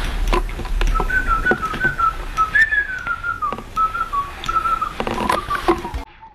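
Someone whistling a tune, a run of short notes that rise a little, then drift gradually lower, with scattered light clicks and taps.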